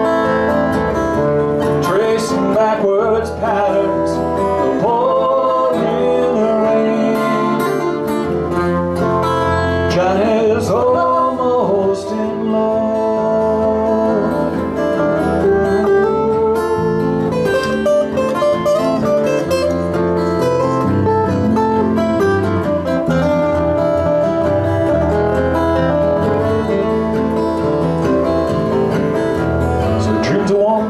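Live acoustic folk band playing an instrumental break: two acoustic guitars strumming and an electric bass under a flute carrying the melody.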